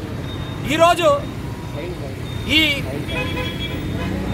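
Road traffic running steadily beside a roadside, with a vehicle horn sounding briefly about three seconds in, and short bits of a voice over it.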